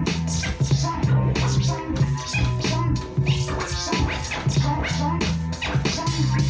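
Vinyl scratching by hand on a Technics SL-1200MK2 turntable: the record is pushed back and forth in quick strokes, giving short rising and falling scratch sounds over a playing beat with a strong, pulsing bass line.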